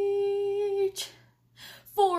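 A woman singing unaccompanied, holding one steady note for about a second, then a quick breath and a short pause.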